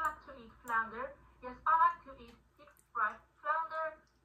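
Speech only: a girl's voice reading aloud quietly in short phrases with pauses.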